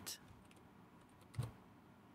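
A few light keystrokes on a computer keyboard while code is being edited, with one sharper key press about a second and a half in.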